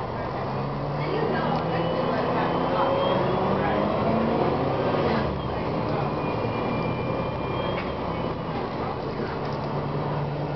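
Cummins ISM diesel engine of a 2007 Gillig Advantage bus heard inside the passenger cabin, pulling away and rising in pitch and loudness with a thin high whine climbing alongside. About five seconds in the pitch and level drop as the Voith automatic transmission shifts up, and the engine runs on steadily.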